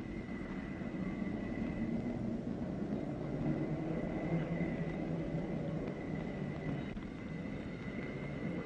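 Steady low rumbling background noise with hiss and a faint, steady high-pitched tone, getting a little louder in the middle.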